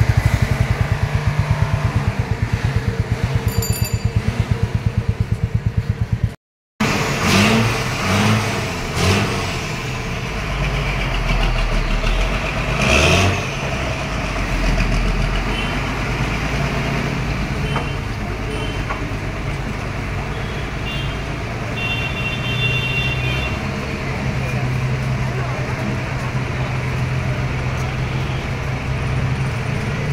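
Road vehicle engines running in street traffic: a low, steady engine hum, with voices faintly in the background. The sound drops out briefly about six seconds in.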